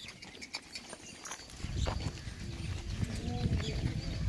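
Barbari goats moving about on dry dirt ground, with light scattered hoof steps. A low rumble comes in from about halfway.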